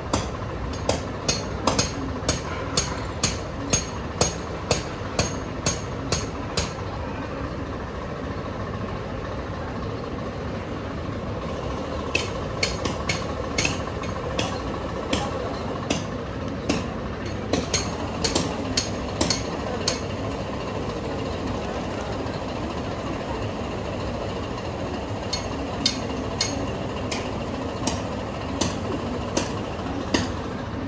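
Sharp strikes repeating about twice a second in runs of several seconds, stopping and starting again, over a steady background noise.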